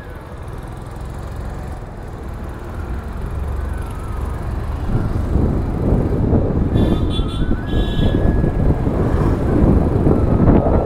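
Motor scooter moving off and riding in traffic: a low steady engine hum at first, then wind rushing over the microphone grows louder from about halfway as the scooter picks up speed.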